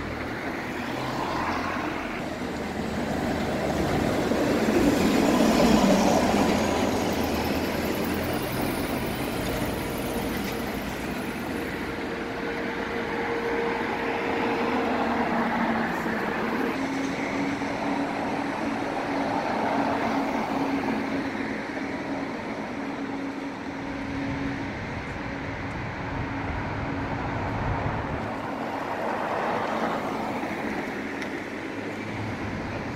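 Road traffic going by on a busy city street, loudest as a vehicle passes about five or six seconds in. A steady engine hum runs through the second half, dropping slightly in pitch around the middle.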